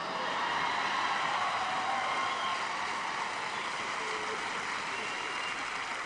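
Large live audience laughing: a dense wave of crowd laughter that swells within the first second and slowly dies away.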